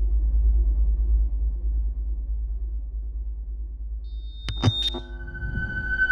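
Logo-animation sound design: a deep electronic rumble that slowly fades. About four and a half seconds in come a few sharp glitchy clicks, then a held, ringing electronic chord.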